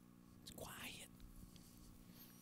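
Near silence: room tone, with one faint, brief breathy voice sound like a whisper or exhalation about half a second in.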